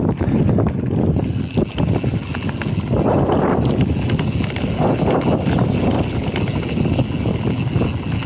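Wind rushing over a handlebar-height action camera's microphone as a Specialized Epic Expert mountain bike rolls along a dirt trail strewn with dry leaves. The tyre noise is steady, with frequent small rattles and knocks from the bike over bumps.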